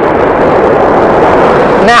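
Subway train crossing the Manhattan Bridge: a steady, loud rumble of train noise.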